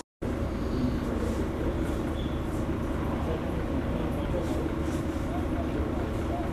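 Steady background hubbub of indistinct voices over a low rumble, starting after a brief dropout at the very beginning.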